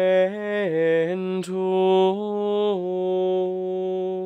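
A man's solo voice singing Gregorian chant unaccompanied, with long sustained Latin notes. The line dips lower, climbs back, and settles on a long held note.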